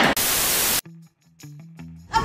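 A burst of TV-style static hiss, lasting well under a second, cut off sharply and followed by a short musical sting of a few brief low notes: a logo transition sound effect.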